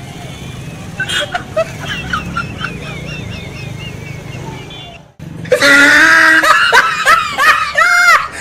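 Busy street noise with traffic for the first five seconds. After a sudden cut, a much louder edited-in laughter sound effect with music takes over.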